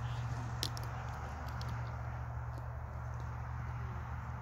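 Open-air ambience over a sports field: a steady low rumble with a faint even hiss, and one sharp short tap about half a second in.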